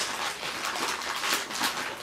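Thin plastic parts bags crinkling and rustling in irregular crackles as they are handled and pulled open.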